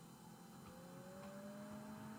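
Near silence: quiet room tone, with a faint held tone that rises slightly in pitch from about the middle on.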